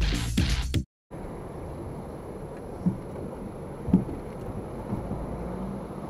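Background music for under a second that cuts off abruptly, then the steady low rumble of a car cabin, picked up by a dashcam on a slow-moving car, with a few brief low thumps and a faint steady high-pitched whine.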